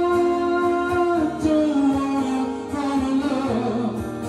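A man singing over his own strummed acoustic guitar: he holds one long note, then falls through a few lower notes in steps near the end.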